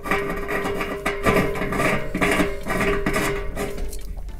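Background guitar music, with a faint metal-on-metal rasp of a brass union tail being threaded by hand into the radiator's bushing.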